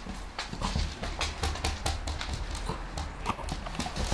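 Several puppies' claws clicking and paws tapping irregularly on a hard wooden floor as they move about.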